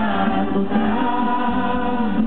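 A small group singing a worship song, led by a woman's voice through a microphone, with electronic keyboard accompaniment.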